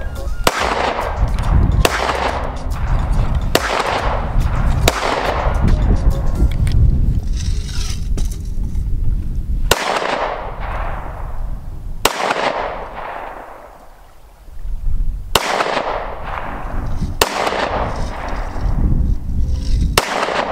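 Handgun fired about eight times out over a pond in target practice, the shots spaced one to a few seconds apart. Each report trails off in a long echo.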